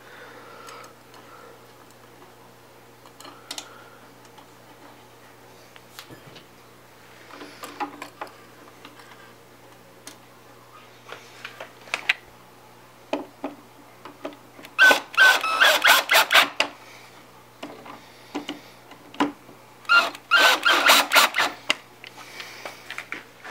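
Powered Phillips screwdriver driving the small screws that hold the turntable's metal cable plate: two runs of rapid mechanical clicking, each about a second and a half long, in the second half. Light clicks of parts being handled come before them.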